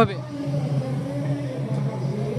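A steady low hum under faint background voices.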